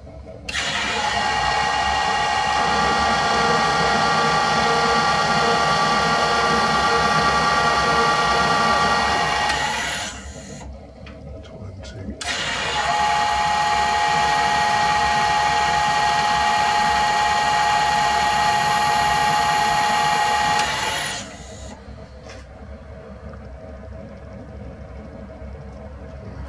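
Metal lathe screw-cutting an M40x1.5 thread: the spindle and gear train run with a steady whine for about nine seconds, stop, then run again for about nine seconds after a two-second pause.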